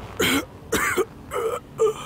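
An old man's voice coughing four short times, about half a second apart.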